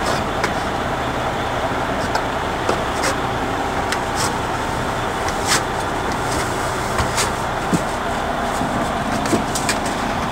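Heavy diesel engine running steadily, with a few short sharp clicks scattered through.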